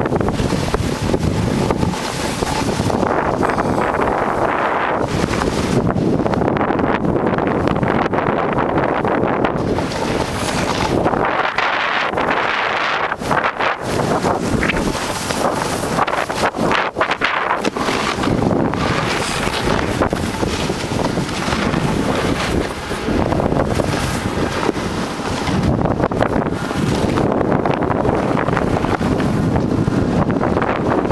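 Loud, uneven wind rushing over the camera microphone during a downhill ride on a snow slope, dropping off briefly a couple of times.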